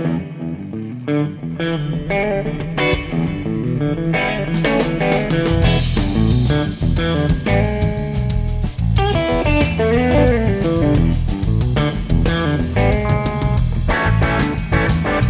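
Live blues-rock trio playing an instrumental intro: a Telecaster-style electric guitar plays a riff over electric bass. The drums and cymbals come in about four and a half seconds in, and the full band plays on from there.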